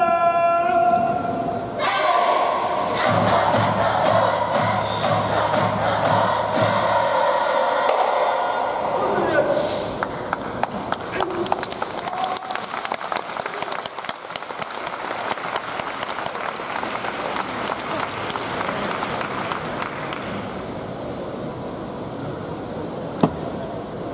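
A man's long held shout from a university cheering-squad leader, followed by several seconds of band music and group shouting that end about ten seconds in. Audience applause and clapping then follow and gradually thin out.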